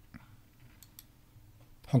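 A few faint, sparse computer clicks as the on-screen article is scrolled down, then a man's voice starts speaking near the end.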